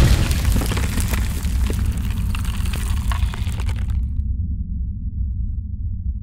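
Cinematic logo-sting sound effect: a deep, loud low rumble with crackling, cracking-stone sounds over it. The crackling cuts off about four seconds in, and the low rumble carries on alone.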